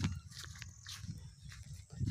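Faint, uneven low rumble of wind buffeting the phone's microphone, with a few soft clicks.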